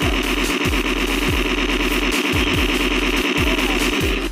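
Electronic background music with a steady thumping beat. Over it sits a loud, fast-pulsing buzz that starts just before and stops just after, about four seconds long.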